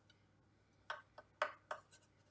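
Knife trimming pastry around the rim of a metal muffin tin: the blade gives four or five short clicks against the tray's edge in the second half.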